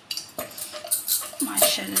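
Light clinks of bangles and taps on a wooden board as hands press and fold puri dough, with a brief voice near the end.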